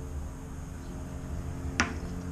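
A steady low hum with a single short, sharp click near the end.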